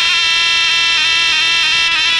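Zurna-type folk shawm holding one long, steady, piercing high note. No clear drum strokes stand out.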